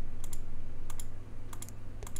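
Computer mouse clicking three times, each click a quick double tick, over a low steady hum.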